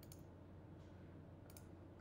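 Near silence with a few faint computer mouse clicks, one just after the start and a couple about one and a half seconds in.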